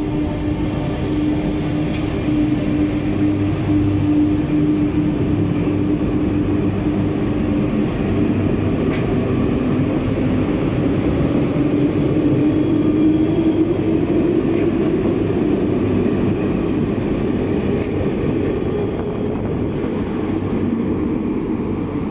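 RER MI79 electric train pulling out of a station and accelerating away, with a steady rumble of wheels and running gear and an electric motor whine that rises in pitch midway through.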